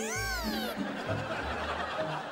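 A comic edited sound effect: a short pitched cry that rises and then falls in pitch, fading out just under a second in, over light background music with soft low bass notes.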